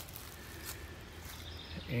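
Quiet outdoor woodland ambience: a low, steady background noise with no distinct event.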